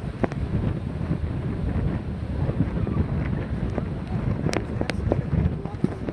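Wind buffeting the microphone, a steady low rumble, with a few brief sharp clicks around four and a half to five seconds in.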